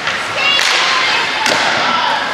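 Ice hockey rink noise: a noisy burst about half a second in, then a sharp crack of a hit about one and a half seconds in, over a steady hubbub of voices from the stands.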